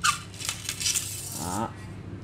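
Handling noise from a carbon telescopic fishing rod: a click, then about a second of scraping hiss as the rod is turned and moved in the hand.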